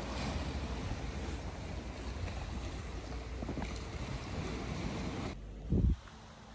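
Wind buffeting the microphone at the seafront over the wash of the sea, a steady rumbling noise that cuts off suddenly near the end. A short, loud low thump follows just before the end.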